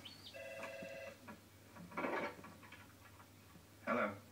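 A telephone rings once, a short steady electronic ring of under a second, heard through a television's speakers, followed about a second later by a brief muffled sound.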